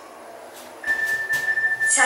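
Hitachi passenger lift car running with a low steady hum. Then, a little under a second in, a single steady high electronic beep sounds for about a second: the lift's arrival signal at a floor, just ahead of its recorded floor announcement.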